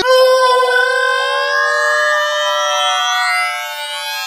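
A cartoon character's long, high-pitched scream, held for about four seconds with its pitch slowly rising and easing off a little near the end.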